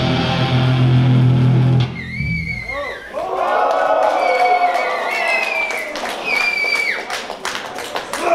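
A live metal band's sustained, distorted closing chord cuts off suddenly about two seconds in. The audience follows with cheering, shouts and whistles, and the first claps come near the end.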